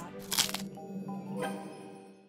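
A crunchy potato-chip bite sound effect about a third of a second in, with a second, smaller crunch about a second later, over background music with held tones that fades toward the end.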